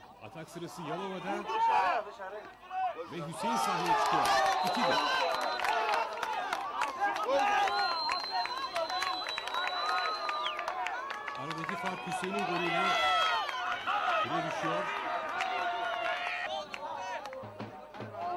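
Several voices shouting and calling over each other on a football pitch during play, with music mixed in. A long, high, steady note sounds twice.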